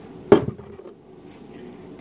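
A single sharp knock of a hard object, with a few faint clicks trailing after it.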